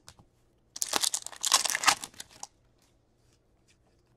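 Crinkling and tearing of a trading-card pack's wrapper for about two seconds, starting under a second in, then a few faint ticks.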